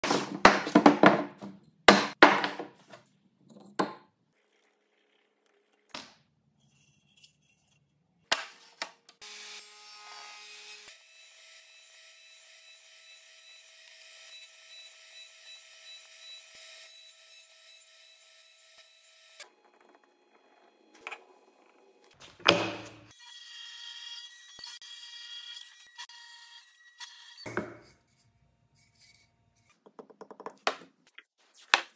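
Woodworking sounds: wooden blocks knocked and slid on a bench in the first few seconds, then a power saw running steadily and cutting wood for about ten seconds, and later another stretch of tool noise with clicks and taps between.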